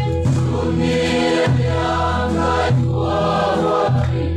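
A group of men and women singing together in a Mizo khawhar zai, the hymn singing at a house of mourning, in long held notes.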